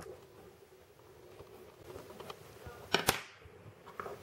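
Pencil lead scratching faintly on paper as the outline of a vase is drawn, then two sharp knocks about three seconds in as the pencil is set down on the paper.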